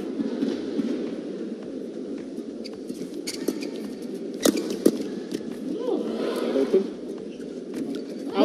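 Badminton rally: sharp racket strikes on a shuttlecock every second or so, the two loudest close together about halfway through, over steady arena crowd murmur.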